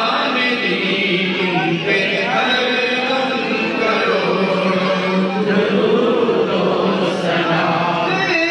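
A group of men chanting together in a devotional chant, many voices overlapping without a break.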